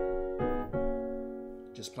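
Piano playing F-sharp major chords, with a new chord struck about half a second in and left to ring and slowly fade under the sustain pedal.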